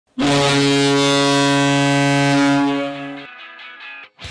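A loud, deep horn blast, one steady note held for about three seconds, then dropping to a quieter, fading tone near the end. It opens the show's intro music.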